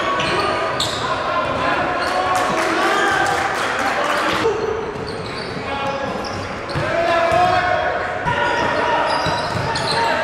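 Basketball game sound on a gym floor: a ball bouncing on the hardwood, with players' indistinct voices and shouts carrying in the hall.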